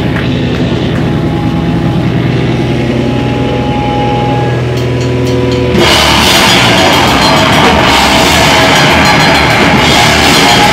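Live heavy rock band starting a song: a held, distorted guitar chord rings steadily for about six seconds, then the full band with drums and cymbals crashes in, louder and denser.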